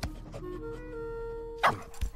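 Film soundtrack music with a few soft held notes, cut by a sudden loud swishing sound effect near the end.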